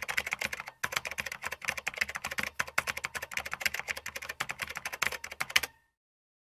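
Fast typing on a computer keyboard: a dense run of key clicks with a short pause about a second in, stopping near the end.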